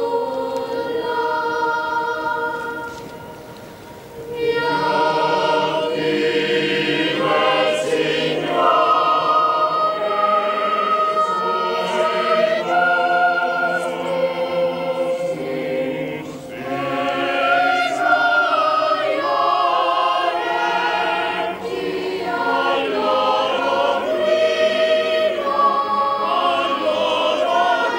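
Choir singing sacred music, several voices holding long notes with vibrato. There is a brief lull about three seconds in, then the singing swells back.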